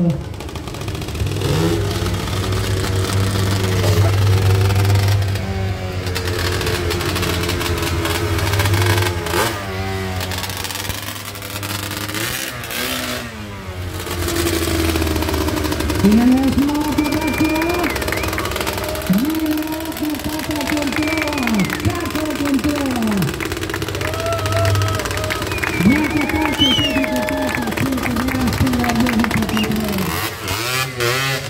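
Quad bike engine running under stunt riding: a steady note through the first half, then revved up and down in quick repeated blips, its pitch rising and falling each time.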